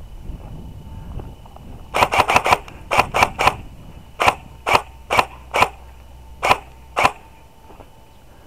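Airsoft rifle firing semi-automatic: a quick string of about seven shots starting about two seconds in, then single shots roughly every half second for about three seconds more.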